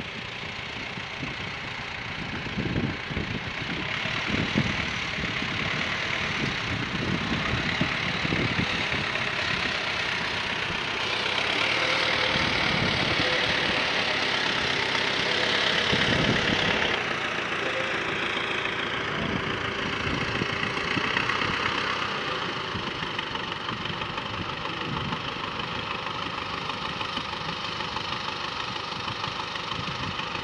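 Diesel engines of a farm tractor and a telehandler running steadily. The sound grows louder towards the middle and eases a little after about 17 seconds.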